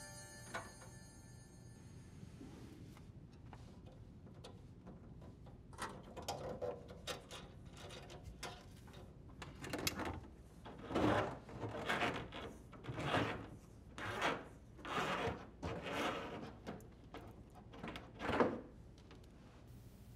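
A dishwasher drain hose being pulled hand over hand through the hole in the sink cabinet wall, sliding and rubbing against the edge of the hole in a run of short scraping strokes about once a second, starting about six seconds in.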